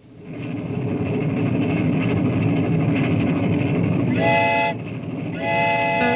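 Train running with a steady rumble, and its whistle blowing twice: a short blast about four seconds in and a longer one starting near the end.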